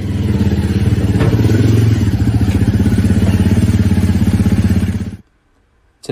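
Honda CRF300L single-cylinder four-stroke engine running with an even, rapid pulsing beat, then cutting off abruptly about five seconds in.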